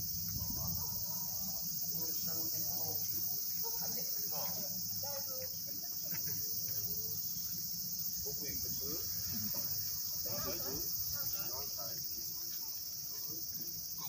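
Steady, high-pitched chorus of insects chirring without a break, with faint distant voices and a low hum underneath.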